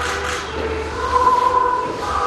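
A choir singing in long held notes.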